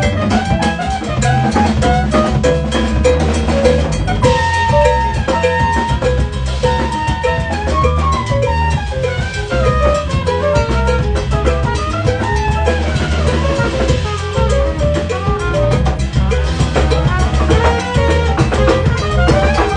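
Live jazz band playing: a trumpet solo of moving melodic phrases over drum kit, electric bass and hand percussion.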